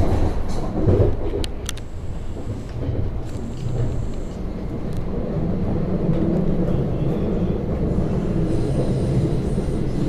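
Interior running noise of a Class 707 Desiro City electric multiple unit under way: a steady low rumble of wheels on track. Two sharp clicks come about one and a half seconds in, and a faint high whine sounds at times.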